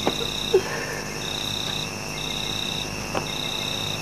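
A cricket trilling on a steady high note in repeated bursts just under a second long, with brief gaps between them. A few sharp clicks sound near the start and about three seconds in.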